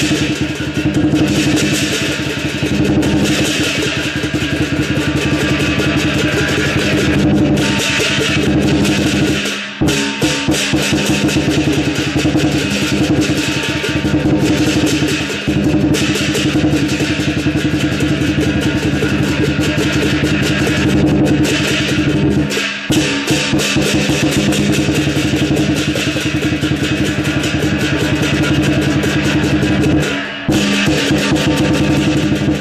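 Live lion dance percussion: a drum beaten in a fast, steady rhythm with ringing metal cymbals clashing along. There are brief breaks in the beat about ten seconds in and again about twenty-three seconds in.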